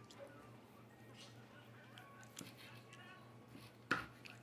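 Kitchen knife slicing through a large pavement mushroom (Agaricus bitorquis) on a wooden cutting board: faint soft cutting and small clicks, then a sharp knock of the blade on the board near the end, over a low steady hum.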